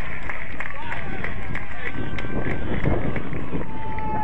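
Footballers shouting to each other on a grass pitch, with wind rumbling on the microphone and a few sharp knocks. One call is held briefly near the end.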